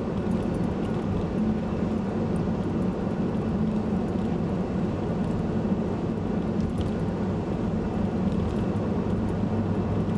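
Steady road and engine noise inside a moving car's cabin: tyre roar and a constant low hum at cruising speed.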